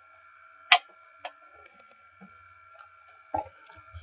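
Hand-held movie clapperboard snapped shut once with a sharp clack, followed about half a second later by a fainter click. A faint steady high hum runs underneath.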